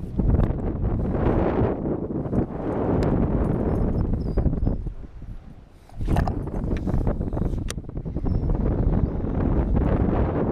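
Wind buffeting the microphone, easing off briefly about halfway through, with scattered clicks and knocks from a baitcasting rod and reel being cast and reeled.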